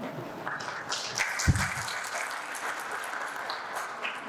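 Audience applauding, a steady patter of many hands clapping, with a single low thump about a second and a half in.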